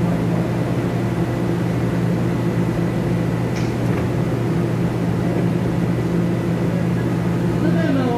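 Steady hum with several low held tones from a TEMU2000 Puyuma electric train standing at the platform with its onboard equipment running, and a couple of faint clicks near the middle.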